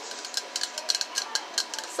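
Aerosol can of nail enamel dryer spray being handled and shaken close to the microphone, giving a quick, irregular run of light metallic clicks and rattles.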